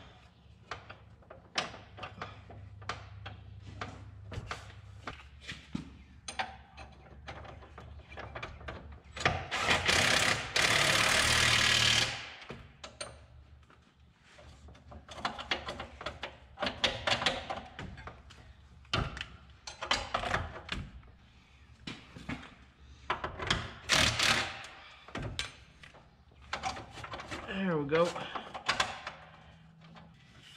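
Repeated metal clanks, clicks and knocks of a socket wrench and parts being worked on a John Deere 7100 planter row unit. A loud steady hiss of about two and a half seconds comes near the middle.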